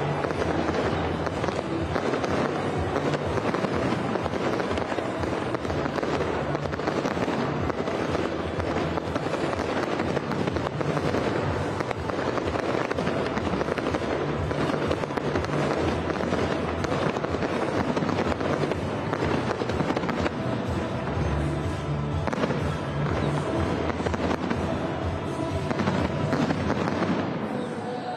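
Fireworks display: a dense, continuous crackle of many small bursts, with music playing underneath.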